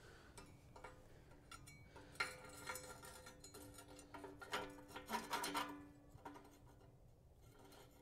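Faint metal clicking and scraping as the sheet-metal pellet feed slide of a homemade pellet heater is worked against its pipe, with a light metallic ring. The sounds cluster between about two and six seconds in.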